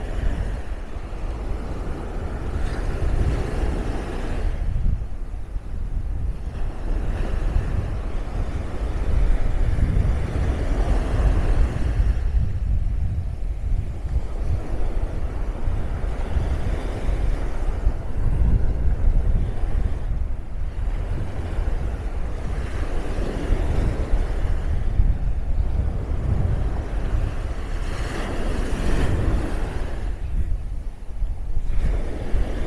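Small Caribbean surf breaking and washing up the sand, swelling and fading every five to seven seconds, over a heavy rumble of wind on the microphone.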